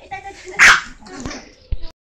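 A Chihuahua gives one sharp, short bark about half a second in. A short low thump comes near the end.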